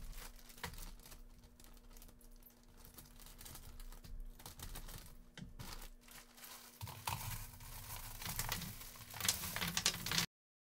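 Plastic candy bag crinkling as it is tipped, then wrapped fun-size chocolate bars pouring out of it into a plastic pumpkin bucket and spilling onto the table, a dense rustle and patter of wrappers that is loudest near the end.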